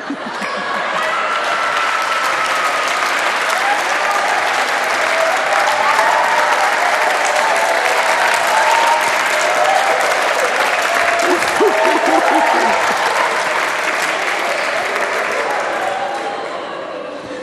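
Studio audience applauding, with voices mixed in over the clapping. It swells up about a second in, holds steady, and begins to ease off near the end.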